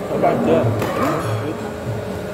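Several people talking at a dining table, voices overlapping, over faint background music.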